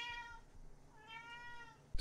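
A domestic cat meowing twice, faintly; the second drawn-out meow comes about a second in.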